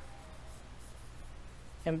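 Dry-erase marker writing on a whiteboard: faint scratchy strokes.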